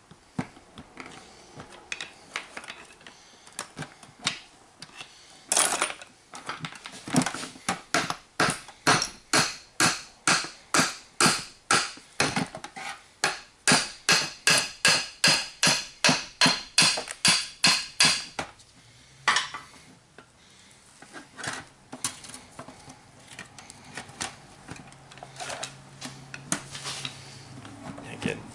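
Hammer blows on the aluminium housing of a seized Denso 10P30-style automotive A/C compressor, driving its two halves apart: a steady run of sharp metallic strikes, about two or three a second, from about six seconds in to about eighteen seconds. Lighter, scattered taps come before and after the run.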